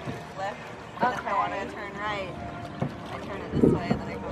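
Indistinct voices, with a short low gust of wind buffeting the microphone near the end.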